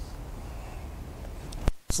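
Steady low rumbling background noise with no engine running, broken by two sharp clicks close together near the end.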